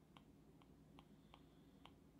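Near silence with faint, uneven ticks of a stylus tip tapping on an iPad's glass screen, about five in two seconds.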